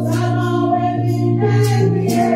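A woman singing a gospel song into a microphone, holding long notes over a steady low sustained note.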